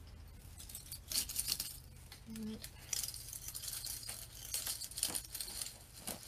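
Pine branches rustling and crackling in short bursts as pine cones are pushed and settled in among the needles.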